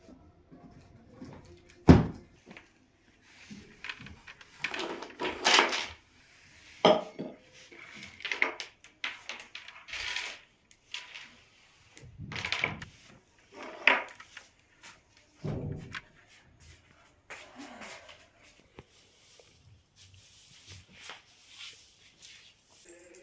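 Household handling noises: a sharp thump about two seconds in, then scattered rustles and knocks at irregular intervals.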